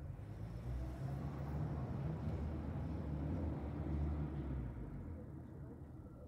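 Bombardier Global Express business jet passing overhead: a low jet rumble that swells to its loudest about four seconds in, then fades away.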